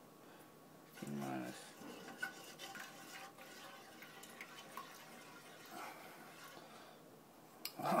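Faint small clinks and scrapes of kitchen utensils and cookware while soup is being made, after a brief mumbled vocal sound about a second in.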